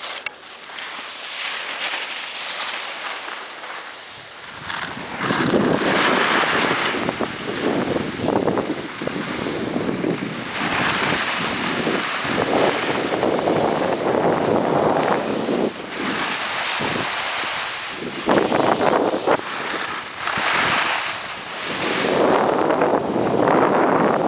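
Wind buffeting the microphone of a camera carried by a moving skier, mixed with the hiss and scrape of skis on packed snow. It is fairly quiet at first, gets much louder about five seconds in, then keeps swelling and falling.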